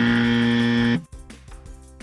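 Wrong-answer buzzer sound effect: one low, flat buzz lasting about a second, marking an incorrect choice in a quiz game. Quiet background music carries on after it.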